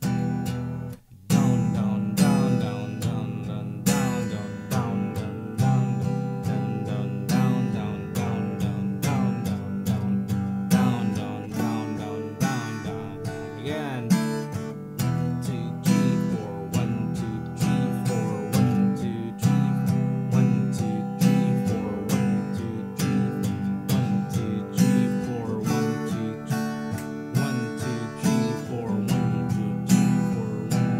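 Acoustic guitar strummed by hand in a steady rhythm, working through the simple four-chord progression of E minor, C, G and D. There is a brief break about a second in, then continuous even strumming.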